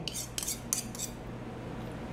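A metal spoon clinking and tapping against a plastic food container as fruit slices are laid on a dessert, several light clicks in the first second, then quieter.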